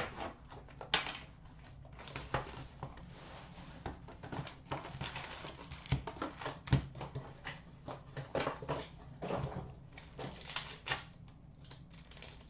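A box of Upper Deck Artifacts hockey card packs being opened and its foil-wrapped packs handled: irregular rustling and clicking, with a couple of soft knocks as packs are set down on a glass counter.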